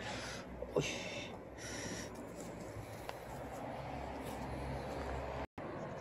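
A frightened tabby kitten hissing three times in quick succession in the first two seconds, followed by a low steady outdoor background rumble.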